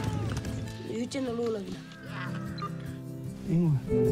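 Children's short shouts and cries in play, over soft background music.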